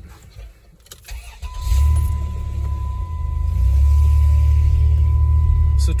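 Van engine rising from a quiet idle into a loud, steady low rumble about a second and a half in as the van pulls forward. A single knock comes just before it, and a thin steady high tone runs over the rumble.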